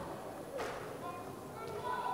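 Faint background voices in a large indoor hall, with one soft thud a little over half a second in.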